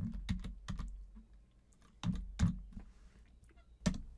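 Computer keyboard keys being typed in short bursts of clicks, with one louder keystroke near the end.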